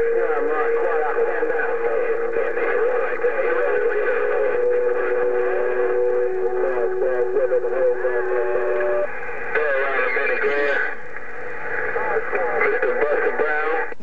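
President HR2510 radio receiving other stations on 27.025 MHz through its speaker: garbled, overlapping voices with steady whistle tones that hold for several seconds, typical of several transmitters keyed at once.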